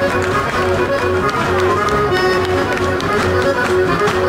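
Accordion music playing a lively Sardinian folk dance tune with a repeating bass pattern, with the dancers' feet tapping on the stage.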